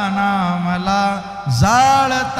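A man's voice chanting a verse in long, drawn-out held notes with slow pitch bends, starting a new phrase about one and a half seconds in that slides up from low.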